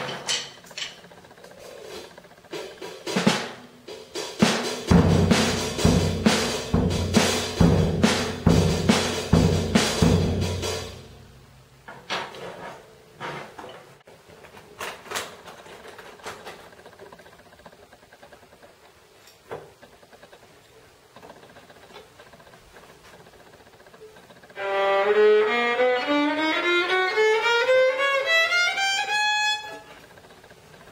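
Drum kit played for several seconds, drum hits under ringing cymbals, then stopping. After scattered knocks and handling noises, a violin bows a rising scale near the end, one held note after another climbing about two octaves.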